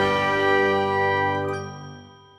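A short chiming logo jingle: a bright held chord rings on and fades away near the end.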